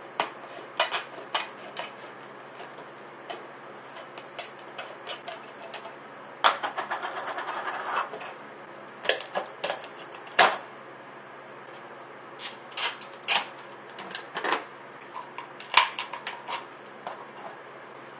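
Tin snips cutting around the bottom of a plastic water bottle: a run of sharp snips and plastic crackles, with a longer crunching stretch about a third of the way in and a few louder snaps later.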